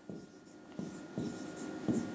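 Pen writing on a touchscreen board: a few short, light scratching strokes.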